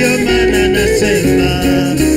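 Live praise-and-worship music: a male lead singer on a microphone holding and sliding between notes, with backing voices over a keyboard-led band and bass.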